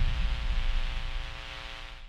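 An edited-in dark droning sound effect, a buzzing multi-tone hum over static hiss and a low rumble, fading out steadily.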